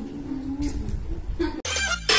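A woman's drawn-out crooning voice, pitched and wavering, fading out; about one and a half seconds in, a sudden whoosh from an edited transition cuts in.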